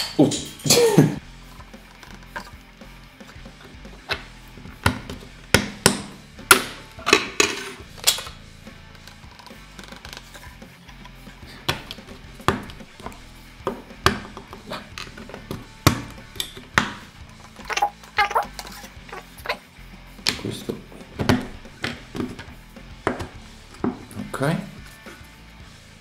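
Background music under a string of sharp clicks and knocks from hard 3D-printed plastic pieces being fitted together and set down on a wooden table.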